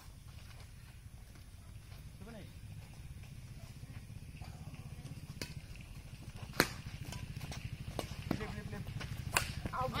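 Badminton rally: rackets striking a shuttlecock, sharp hits about a second apart starting about halfway through, the loudest just past the middle, over a steady low hum. Players call out briefly near the end.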